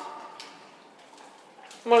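Quiet room with one faint tap about half a second in; a woman's voice starts again near the end.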